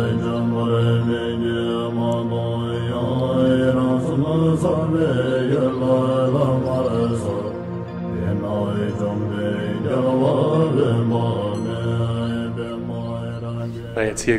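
Music of a chanted mantra: a voice singing a slowly rising and falling melody over a steady drone.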